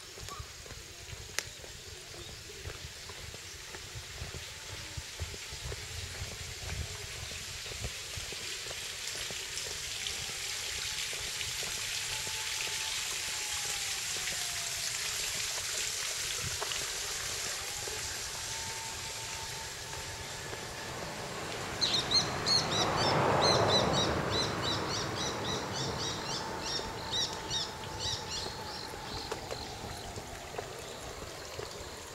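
Outdoor woodland ambience with a steady hiss that swells and fades. About two-thirds of the way in, a brief louder rustle comes, and a bird starts calling a rapid series of high chirps that runs on to the end.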